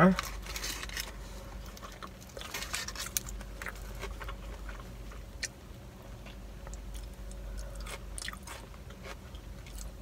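A person biting into and chewing a fast-food burger, with soft crunches and small wet mouth clicks, loudest in the first second and again about two and a half seconds in. A steady low hum runs underneath.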